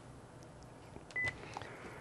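A single short electronic beep about a second in, with a few faint clicks around it, on the studio telephone line as a caller is put through; otherwise faint line hiss.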